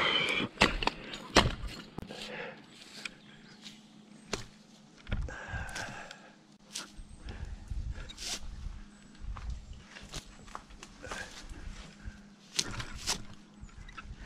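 Climbing rope being handled and tied around a pine limb: scattered rustles, knocks and clicks of rope and gear against the bark and branches, with the odd low rumble.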